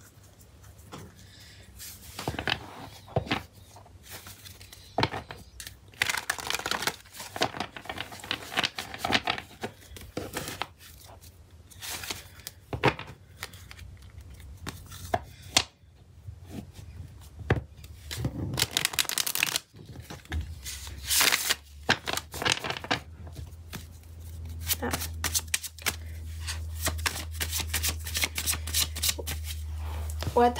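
A tarot deck being shuffled and handled: irregular runs of card riffling, slaps and clicks. A low steady hum comes in about two-thirds of the way through.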